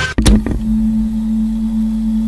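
Horror jump-scare sound effect: the music breaks off, a sudden sharp hit lands about a quarter second in, then a steady, loud low drone with a hiss of static is held.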